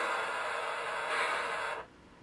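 A steady hiss that cuts off abruptly near the end.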